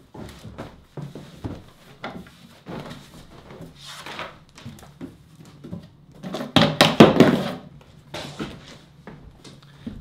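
Clothes and belongings being pulled out of the cubbies of a cube shelving unit: irregular rustling and light knocks, with a louder bump and clatter about seven seconds in.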